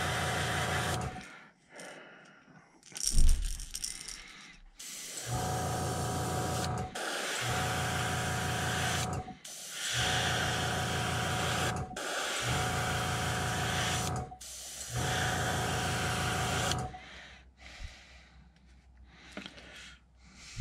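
Airbrush spraying paint in a string of short bursts, each about two seconds of hiss with a low hum under it. There is one sharp knock about three seconds in.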